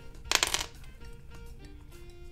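Plastic LEGO bricks clicking and clattering in the hands, a quick run of clicks lasting about half a second near the start, over faint background music.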